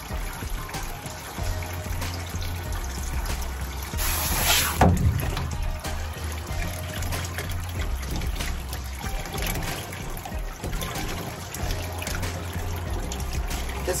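Background music with water trickling in a steel grooming tub while a wet cat is washed. A brief, louder burst of noise comes about four seconds in.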